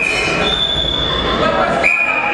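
Referee's whistle blasts in a large, echoing sports hall. One steady shrill blast, a higher-pitched one overlapping it briefly, and another blast starting near the end, over the noise of the hall.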